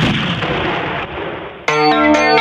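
An explosion-like sound effect dropped in as a transition in a reggae DJ mix, a noisy blast that dies away over about a second and a half. Near the end the next reggae tune comes in sharply with keyboard and guitar chords.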